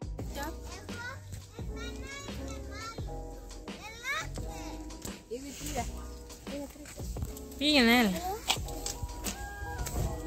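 Children's voices calling and chattering over background music, with one long, loud, wavering child's shout about eight seconds in.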